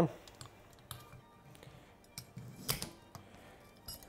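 Light clicks and clinks from handling a motorcycle rear shock as a new coil spring is slid over the shock body and the assembly is set on a workbench. There are a few scattered taps, with one louder clack a little under three seconds in.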